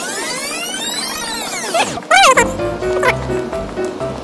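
Edited-in sound effect and music: a sweeping whoosh of swirling pitch arcs for about two seconds, then a quick warbling pitch glide, after which light background music with steady held notes begins.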